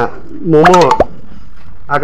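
A short spoken phrase about half a second in, followed right after by a single sharp pop with a quick downward-falling pitch.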